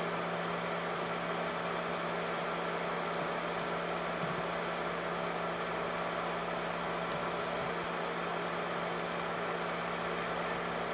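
Film projector running, a steady mechanical whir over a constant low hum, with a few faint ticks.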